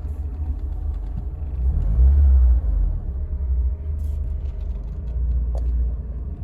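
Low, steady rumble inside the cabin of a 1989 BMW 316i on the move, from its four-cylinder engine and the road. It swells for about half a second around two seconds in.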